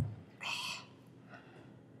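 A short low thump at the very start, then a person's sharp breath, about half a second long, with fainter breathing after: a man blowing and gasping from the heat of a chili-coated hot nut.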